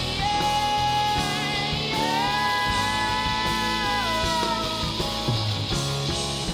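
An indie rock band playing live: electric guitar, bass, drums and keys, with long held notes over the band.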